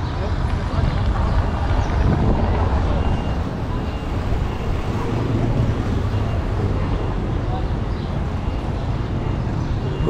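Outdoor street ambience: a steady low rumble with faint, indistinct voices of people nearby.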